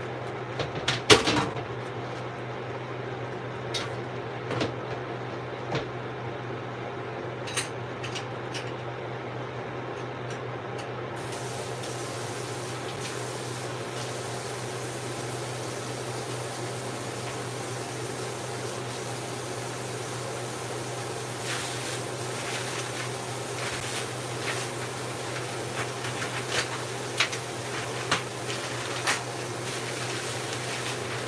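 Scattered clicks and knocks of dishes, containers and a cutting board being handled at a kitchen sink, the loudest about a second in and a run of them in the last third, over a steady low hum.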